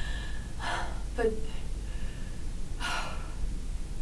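A young woman's breathing: two audible breaths, one about half a second in and one near three seconds in, with a single spoken word between them, in a dramatic pause.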